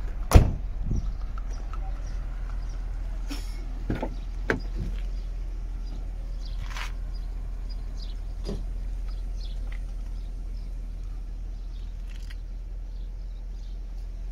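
Audi A5 Sportback's tailgate shut with a single loud thud, followed by a couple of softer clunks and a click from the car's door being opened, over a steady low hum.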